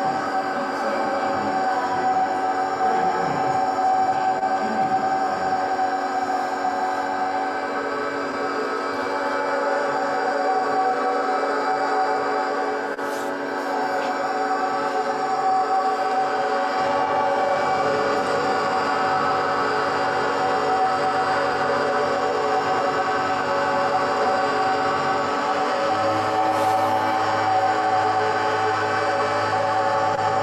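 Ambient drone music: many sustained tones layered and held steady, with a deeper low tone joining about four seconds before the end.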